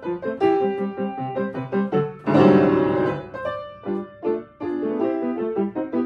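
Upright piano played solo, a brisk run of notes with a loud full chord struck about two and a half seconds in.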